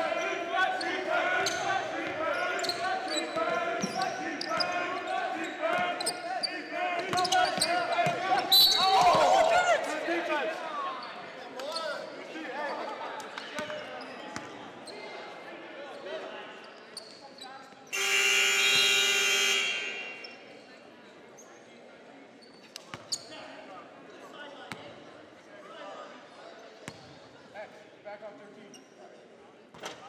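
Basketball play in a gymnasium with players shouting and sneakers squeaking on the hardwood, and a sharp whistle blast about eight seconds in. Near the two-thirds mark the scoreboard horn sounds once, a loud steady electronic tone lasting about two seconds. After it the gym is quieter, with a few basketball bounces on the wooden floor.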